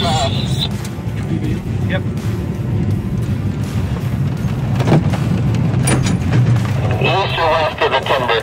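Pickup truck driving on a snowy rural road, heard from inside the cab: a steady low rumble of engine and tyres, with a few knocks and bumps. A voice comes in near the end.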